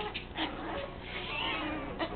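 A small puppy making high-pitched, wavering squeaks and little growls while it play-bites a hand.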